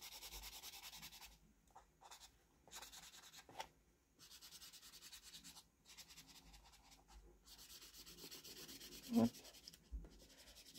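Black felt-tip marker rubbing across paper in short stop-start strokes, faint. A brief, slightly louder sound near the end.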